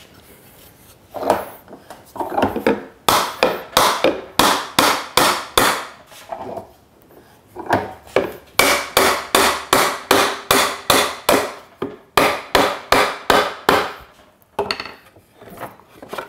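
Soft-faced mallet striking a glued mortise-and-tenon joint in wood, about three blows a second in three runs with short pauses between them, driving the tenon into the mortise. The glue has made the joint tight, and it does not seat fully under the blows.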